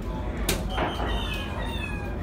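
A soft-tip dart strikes an electronic dartboard with a sharp click about half a second in. The machine answers with a string of short electronic tones, some sliding in pitch.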